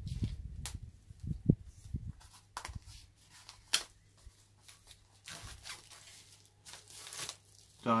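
Plastic shrink-wrap being torn and peeled off a CD case, crackling in short irregular bursts, with a few dull handling knocks in the first two seconds.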